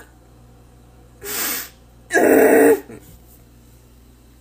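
A person's sharp breath in, then a single loud sneeze about two seconds in.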